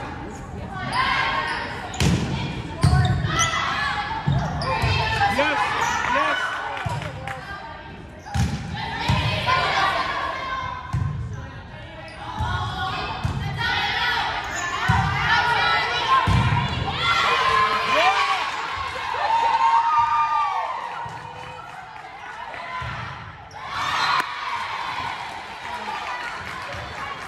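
Volleyball being played on a hardwood gym court: repeated thuds of the ball being struck and bouncing, and of players' feet, under indistinct calls and chatter from players and spectators, echoing in the gymnasium.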